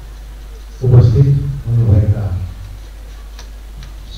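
A man speaking into a handheld microphone: one short phrase about a second in, then a pause in which two faint clicks are heard near the end, over a steady low hum.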